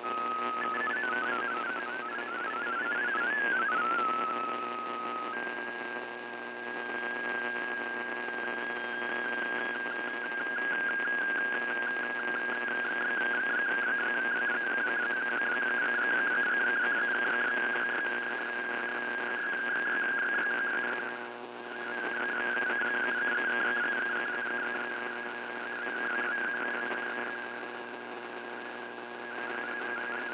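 Shortwave VOA Radiogram digital broadcast received in AM on a Kenwood TS-480SAT, heard through heavy static. For the first few seconds warbling MFSK32 data tones finish a line of text. About five seconds in, a steady tone with a fluttering pattern beneath it takes over as an MFSK picture transmission begins, and it fades briefly about two-thirds of the way through.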